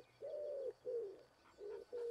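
A pigeon cooing: a phrase of about five low coos, the second one the longest.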